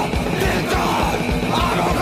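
Loud rock song with a driving drum beat and shouted vocals.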